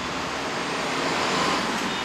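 Road traffic: a steady rush of engines and tyres that swells a little about halfway through.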